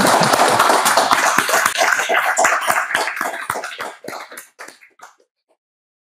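Audience applauding, the dense clapping thinning into a few scattered claps and dying away about five seconds in.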